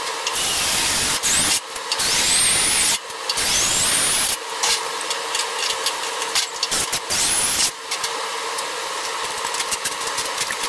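A power tool working on the sheet-metal edge of an old truck roof skin while the spot welds are being taken apart. It runs in long stretches with brief stops about one and a half, three and nearly eight seconds in, and its whine rises in pitch several times as it spins up.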